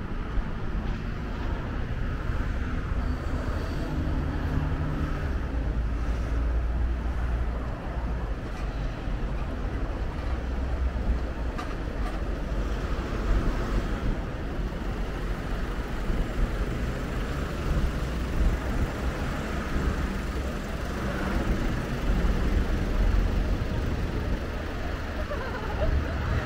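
City street traffic: a steady roadway hum with the engines of cars, vans and trucks passing on the adjoining road, rising and falling as each one goes by.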